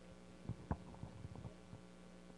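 Steady electrical hum from a handheld microphone's sound system during a pause, with a few soft knocks in the first second and a half, typical of the microphone being handled.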